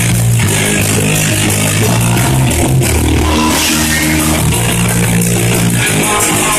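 Live rock band playing loud: electric guitar and bass holding low riffing notes over a drum kit, with no singing in this passage.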